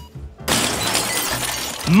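A sudden crashing noise, starting abruptly about half a second in and running on for over a second, over background music.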